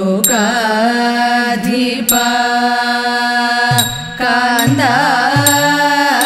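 Women's voices singing a Thiruvathira song together in long, held notes, over an idakka drum whose pitch swoops up and down. Sharp ringing strikes fall about every second and a half to two seconds.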